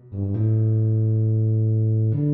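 Tuba, likely a synthesized tuba sound, playing the melody. Two quick short notes, then one long held low note from about half a second in.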